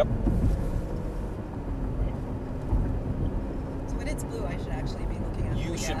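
Engine and tyre-road noise inside the cabin of a prototype semi-autonomous Cadillac SRX, running steadily as the car accelerates on its own back toward its set cruising speed after the car ahead has moved out of the lane.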